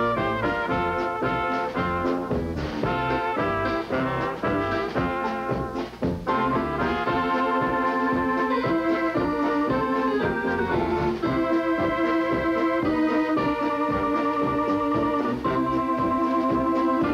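Live polka band playing, with trumpets, sousaphone and drums. From about six seconds in, a piano accordion leads with long held reedy chords over the band.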